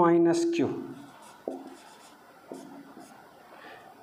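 Marker pen writing on a whiteboard: faint short strokes about a second apart, following a drawn-out spoken word at the start.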